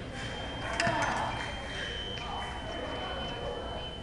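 Electronic fencing scoring machine sounding a steady high tone for about three seconds, starting about a second in right after a few sharp clicks, signalling that a touch has registered. Voices in the hall carry on underneath.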